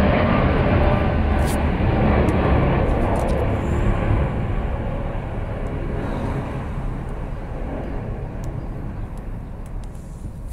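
Broad rumble of a passing engine, starting abruptly at full strength and slowly fading over the following seconds.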